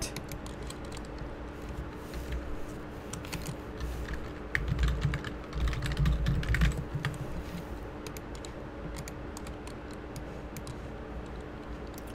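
Typing on a computer keyboard: scattered runs of sharp keystrokes, over a faint steady hum.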